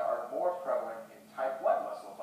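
A person's voice speaking in short phrases, the words not made out.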